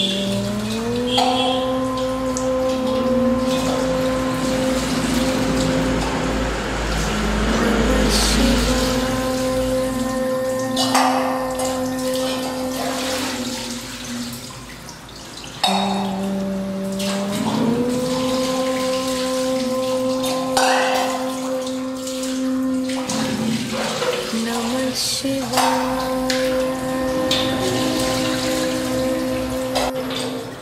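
Devotional chanting of long held, sliding vocal notes, the same phrase coming round about every sixteen seconds. For roughly the first ten seconds, water is splashing as it is poured from a vessel over a stone Shiva lingam in abhishekam.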